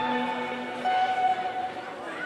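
A quiet passage of live band music: sustained held notes with no drums, one note changing to another about a second in.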